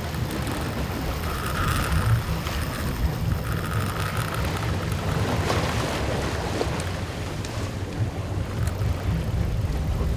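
Wind buffeting the microphone over the steady low rumble of a boat running at sea, with water washing past the hull.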